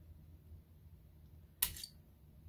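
A blade slicing a thin piece off a polymer clay cane: one short, sharp click-scrape about one and a half seconds in, over a faint low hum.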